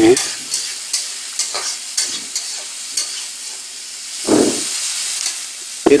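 Chopped onions and green chillies sizzling in oil in a metal kadhai, stirred with a spoon that scrapes the pan in short, irregular strokes. There is one louder, duller stroke about four seconds in.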